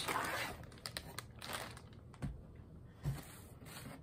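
Cardboard box and plastic packing being handled and rustled during unpacking, with a few soft knocks about two and three seconds in.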